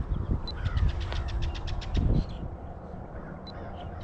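Faint bird calls over a low rumble, with a quick run of about a dozen sharp ticks between half a second and two seconds in.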